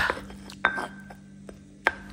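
Stone pestle knocking twice against a stone mortar while grinding shallots and garlic into a paste, each knock followed by a short ringing tone.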